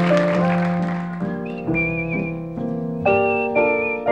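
Grand piano chords with a whistled melody over them, in short held phrases. Applause fades out during the first second or so.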